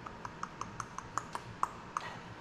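A run of light, sharp clicks, about five a second and fairly even, each with a short ringing tone, like small metal parts clicking together.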